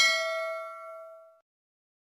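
A single notification-bell ding sound effect, ringing out and fading away over about a second and a half.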